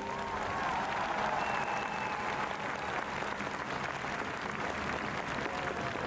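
Audience applauding steadily after the aria's last chord, with a few voices calling out in the first couple of seconds.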